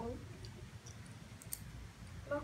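A few faint, sharp clicks over a low steady room hum, the clearest one about one and a half seconds in.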